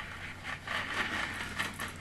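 Rustling and scraping of something handled close to the microphone, a string of short scrapes starting about half a second in.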